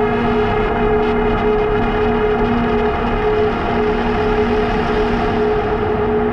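Novation Summit synthesizer playing a sustained, slowly pulsing drone chord, with steady tones and no sharp attacks; its upper overtones thin out near the end as the keys are released.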